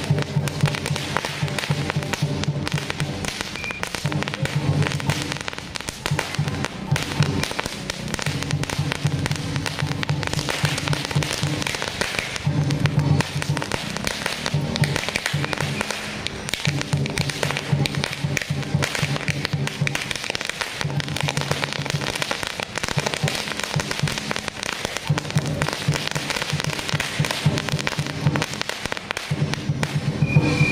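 A string of firecrackers burning on the road, crackling in a continuous rapid stream of small bangs, over music with a repeating low bass pattern.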